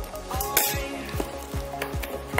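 Plastic shrink-wrap on a cardboard box crackling as hands handle it, with a sharper crinkle about half a second in. Background music with a steady beat plays underneath.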